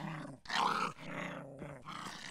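A small dog growling, loudest about half a second in and trailing off more quietly.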